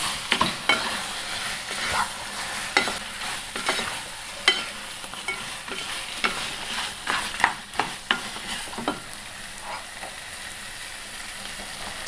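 Raw chicken pieces being stirred into a thick masala in a hot non-stick frying pan with a wooden spatula: a steady sizzle under frequent scrapes and knocks of the spatula on the pan. The strokes stop for the last few seconds, leaving the sizzle.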